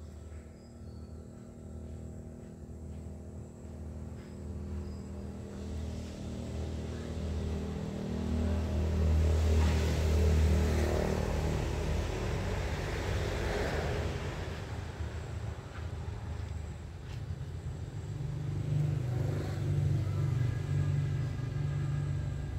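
Engine hum of a motor vehicle, off-screen. It grows louder to a peak about ten seconds in and fades, and a second, higher engine hum comes in near the end.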